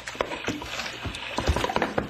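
Radio-drama sound effects of water splashing, with a run of irregular knocks and thuds as a man is hauled out of the sea over the side of a boat.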